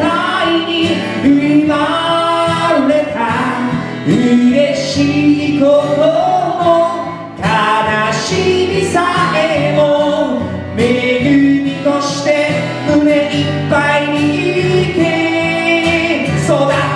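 Live band song: a male lead singer and a female singer with acoustic guitar and djembe accompaniment.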